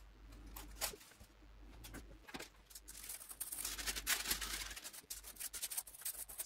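Faint rustling and rubbing of baking paper and silicone oven gloves as melted plastic bottle caps are folded and kneaded together by hand, getting busier from about halfway. A small click sounds about a second in.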